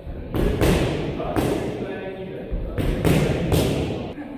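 Boxing gloves punching heavy bags and pads, several irregular thuds.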